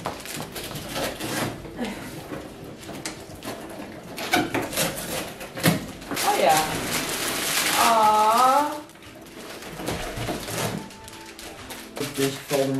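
Rustling and crinkling of cardboard boxes and plastic plant sleeves as potted plants are unpacked, with scattered handling clicks. It grows loudest from about six seconds in. A short wavering voice-like sound comes near the end of that loud stretch.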